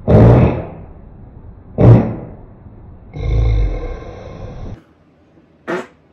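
Edited-in dramatic sound effects: two loud sudden blasts about two seconds apart, then a longer, steadier blast with a high ringing tone that cuts off suddenly.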